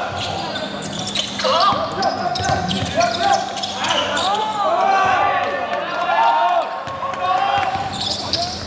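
Live game sound of indoor basketball: the ball bouncing on a hardwood court, short squeaks of sneakers, and players' voices calling out, echoing in the gymnasium.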